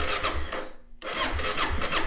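Electric starter cranking the Kawasaki KLR650's single-cylinder engine with the choke off, in a steady rhythmic chug of about three compression strokes a second. The engine does not fire. The cranking stops briefly just before a second in, then starts again.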